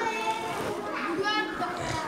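A crowd of children chattering and calling out at once, high voices rising over a general murmur in a large hall.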